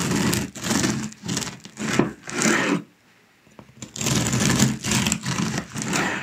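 Serrated bread knife sawing back and forth through the crust of a freshly baked loaf: a rhythmic rasping crunch, about two strokes a second, with a short pause about halfway.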